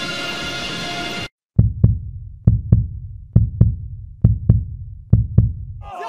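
Music cuts off abruptly about a second in. After a brief silence comes a heartbeat sound effect: five low double thumps (lub-dub), about one per second.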